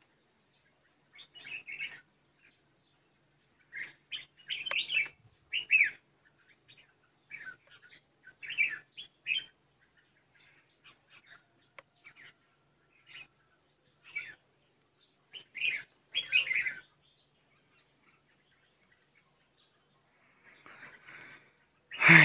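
Red-whiskered bulbuls calling at a cage trap, with short bursts of bright chirping notes that come in irregular clusters, some louder and closer than others.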